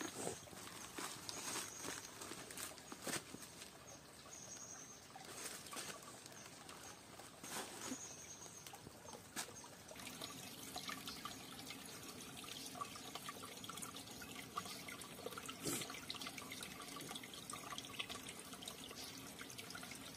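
Faint trickling and small splashes of a shallow stream as a hand dips and moves in the water, thickening from about halfway. In the first half, scattered sharp rustles and knocks of steps on dry leaves and stones.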